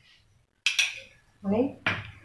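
A steel spoon clinks against cookware twice, about a second apart, each clink ringing briefly.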